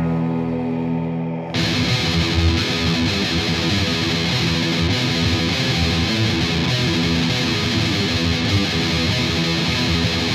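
Melodic death metal recording: a held, ringing chord, then about a second and a half in the full band comes in with distorted electric guitars playing a fast, dense riff.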